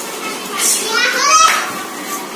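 Young children's voices talking and calling out together, with one high child's voice rising about a second in.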